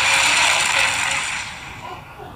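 Fire-blast logo-reveal intro sound effect: a loud, steady rushing blast that fades away over the last second.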